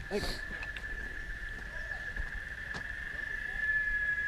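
A steady high insect drone holding one tone, with a second slightly higher tone joining it near the end, and a single faint click about three quarters of the way through.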